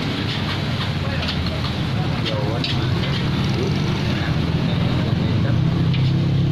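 Nasi goreng being stir-fried in a wok over a gas burner: a steady burner and frying noise, with the metal spatula clinking and scraping against the wok in short strokes. Faint voices underneath.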